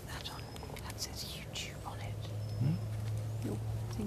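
Whispered speech close to the microphone.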